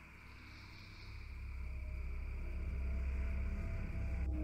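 A low, dark ambient drone fading in and swelling from about a second in, with a faint high hiss above it.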